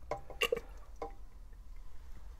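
A few light taps and small liquid squishes from a turkey baster drawing hot pickle out of a slow-cooker pickle pot.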